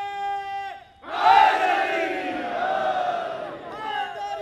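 A single voice holds one long steady note that cuts off just before a second in. After a brief pause, a large crowd shouts a slogan together, loudest at its start and then carrying on as a dense mass of many voices.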